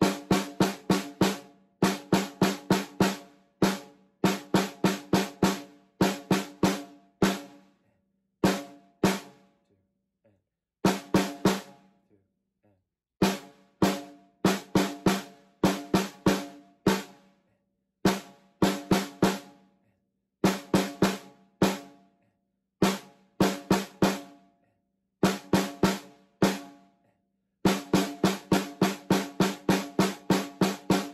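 Snare drum played with wooden drumsticks in a rudimental solo: phrased groups of quick, crisp strokes separated by short rests, each group leaving a brief low ring of the drumhead. About a third of the way in there are two longer pauses between phrases.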